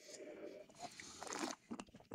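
Faint mouth sounds of a man sipping red wine from a glass and working it around his mouth, with a few small clicks near the end.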